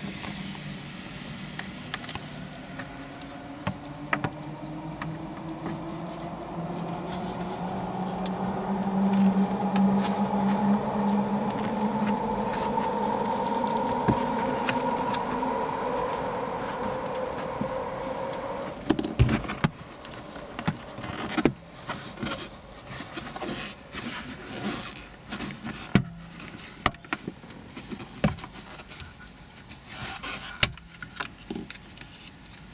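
A steady motor drone whose pitch slowly rises, loudest in the middle, stops abruptly about two-thirds of the way through. After it comes a run of sharp plastic clicks and snaps: a plastic pry tool working the dashboard trim bezel and its clips loose around the head unit.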